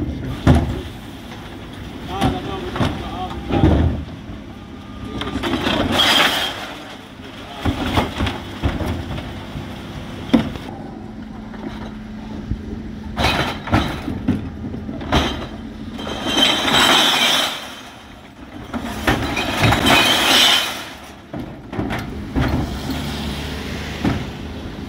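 Dennis Elite 6 refuse truck's electric Terberg OmniDEKA bin lift tipping black wheelie bins, with several bursts of glass bottles, tins and plastic clattering into the hopper over the truck's steady running.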